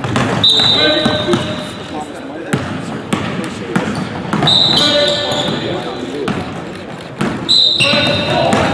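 Basketball dribbled on a hardwood gym floor, bounces ringing through a large hall, with sneakers squealing on the court three times, each squeal about a second long and the loudest sound.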